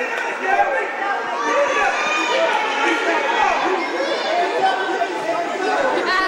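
Gymnasium crowd chatter: many voices talking and calling out at once, echoing in the hall, with a few low thumps.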